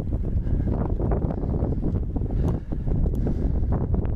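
Wind buffeting the microphone of a camera on a moving bicycle: a steady, low rumble, with a couple of faint ticks in the second half.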